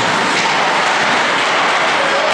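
Steady, loud, even din of an indoor ice rink during a hockey game, with no single sound standing out.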